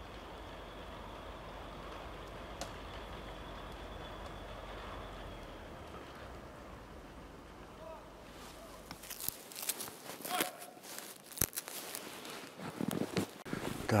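A tracked all-terrain vehicle's engine running with a steady low drone and a faint high whine, which fades out about halfway through. In the last few seconds, footsteps crunching in snow.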